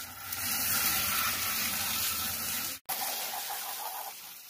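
A thin jet of water spraying onto a TV circuit board, a steady hiss of spray and splashing. It breaks off for a split second near three seconds in, then carries on.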